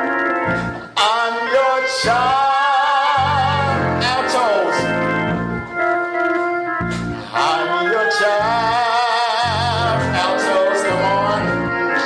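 Hammond organ playing a gospel song, with bass notes that start and stop under a singing voice holding long notes with wide vibrato.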